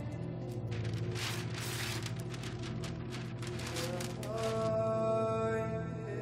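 Film score with a sustained low drone and string tones. Over it, from about a second in to past four seconds, comes a run of rustling, ripping noises: brown wrapping paper being torn off a painting.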